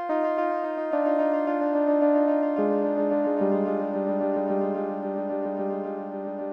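Notes from Bitwig's Phase-4 synth played through an eight-tap delay with feedback, each note repeated as a rapid train of echoes that blend into a held, slowly fading tone. The pitch steps to new notes about a second in and again around two and a half and three and a half seconds.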